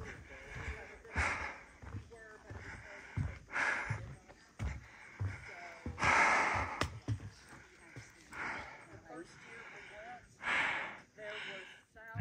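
A person breathing close to the microphone while walking, a breath every second or two, with soft footsteps on a wooden boardwalk.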